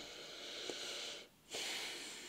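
A person breathing audibly, two soft breaths one after the other with a short gap between them.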